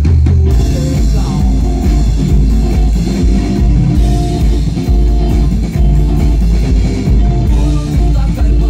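Live rock band playing: drum kit, electric bass and electric guitar, coming in loudly together at the very start and driving on with a steady beat.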